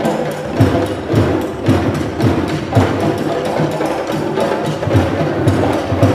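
Live African hand drumming on djembe-style drums, a loud, fast, steady rhythm of many strokes a second.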